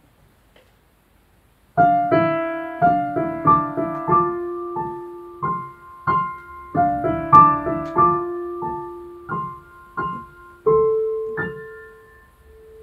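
Digital piano starting a solo piece: after a quiet pause of nearly two seconds, single notes and chords are struck and left to fade. A short figure of notes over a held lower note is played, then repeated about five seconds later.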